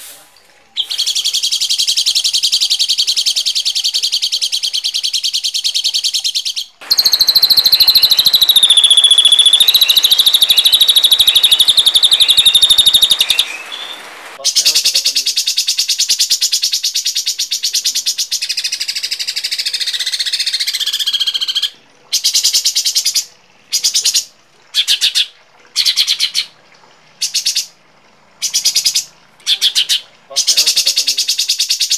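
Harsh, rasping songbird calls played as a song-tutor (masteran) recording. Long buzzy, chattering phrases run for several seconds at a time, the loudest in the middle with a falling whistle through it, then from about 22 s in the calls break into short separate bursts about one a second.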